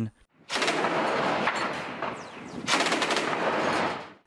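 Gunfire: two long stretches of heavy firing, the first starting about half a second in and fading, the second starting sharply about two and a half seconds in.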